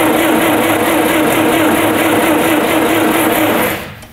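GAZ-69's starter motor cranking the engine steadily at a constant pitch without it catching, then stopping abruptly near the end: the engine will not start.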